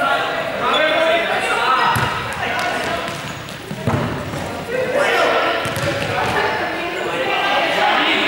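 Students' voices calling out in a large sports hall, with a ball thudding a few times as it bounces and is caught on the court floor.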